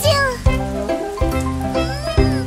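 Children's song backing music with a cartoon kitten's voice over it: a falling cry at the start and a short rising-then-falling call near the end.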